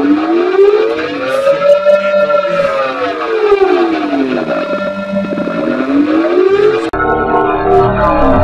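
Sound processed through a ring-modulator vocoder effect: several tones glide up and down together in slow siren-like arcs, each rise and fall taking about three seconds. About a second before the end it cuts suddenly to a differently processed version made of held steady tones with more bass.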